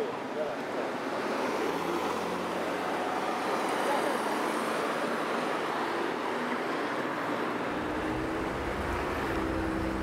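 City street traffic: a steady wash of car and road noise, with a deeper rumble coming in near the end.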